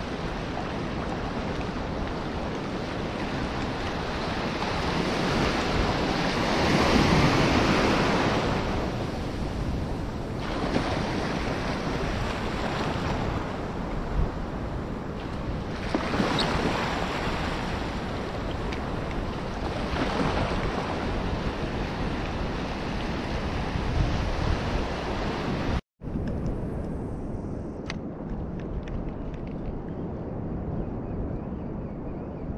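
Surf washing in over the shallows of a sandy beach, with wind buffeting the microphone; the waves swell loudest about seven seconds in and again around sixteen and twenty seconds. Near the end the sound cuts out abruptly and gives way to a quieter, duller wind and water noise from calm estuary water.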